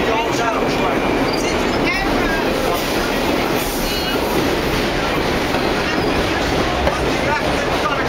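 Vintage New York subway car running, heard from inside the car: a loud, steady rumble of wheels on the rails.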